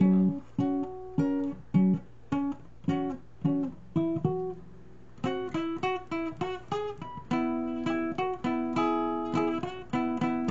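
Acoustic guitar being played: short plucked chords roughly every half second at first, then from about five seconds in a quicker run of notes that settles into longer ringing chords.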